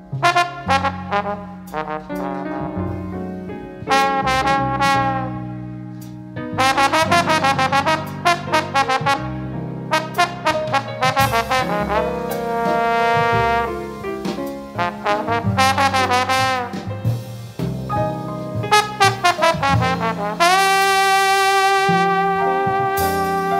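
Jazz recording from a 1979 studio album, led by a brass horn playing quick runs of short notes over a bass line, with one long held note near the end.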